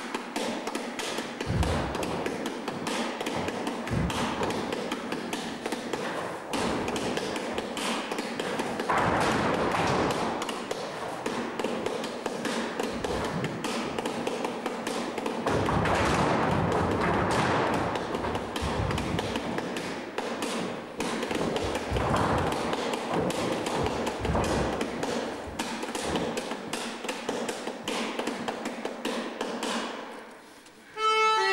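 Several dancers' shoes tapping and stamping on a wooden floor in quick, dense footwork, with a few heavier thuds.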